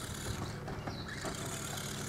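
Faint, steady low hum of a radio-controlled rock crawler's electric motor and gear drivetrain as the truck drives across grass.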